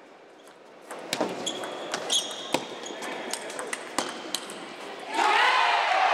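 Table tennis rally: the ball clicks sharply off bats and table several times, with a brief high squeak partway through. About five seconds in, the crowd breaks into loud cheering and shouting as the point ends.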